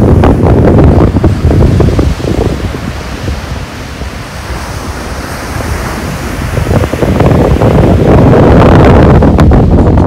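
Surf breaking and washing up the shore under heavy wind buffeting on the microphone, easing for a few seconds midway and rising again about seven seconds in.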